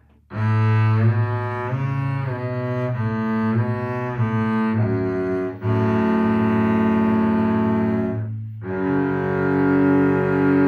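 Double bass played with the bow: a first-position exercise starting on A, first a run of short notes changing about every half second, then two long held notes with a brief break between them near the end.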